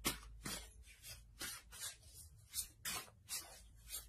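A tarot deck being shuffled in the hands, with short card slaps coming two or three times a second.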